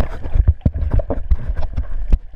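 A quick, irregular run of sharp knocks and clicks with low thumps, about ten in two seconds, picked up by a camera underwater as the swimmer moves through the water.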